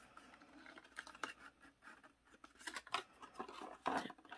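Faint handling of a folded cardstock box: light rustling and scattered small taps and crinkles as the paper pieces are pressed and fitted together, a sharper tap near the end.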